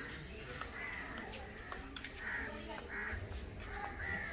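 A bird calling several times, in short separate calls spread through the few seconds.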